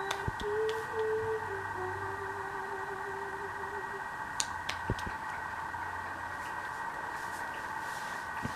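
A toddler humming one long, wavering note through a pacifier, rising briefly about a second in and ending about four seconds in, over a steady background hum. A few soft claps or taps follow.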